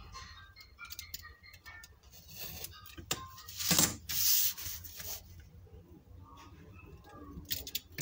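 Brown kraft paper rubbing and sliding on a cutting mat as it is handled and turned over, with one louder rustle about four seconds in. A few light scrapes and clicks near the end as a utility knife is set to the paper.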